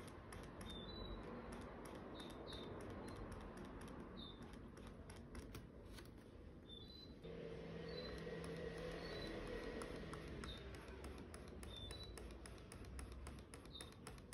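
Faint, quick ticking and scratching of a pen-tablet stylus nib making rapid hatching strokes on a UGEE M708 graphics tablet, with short high chirps scattered through it.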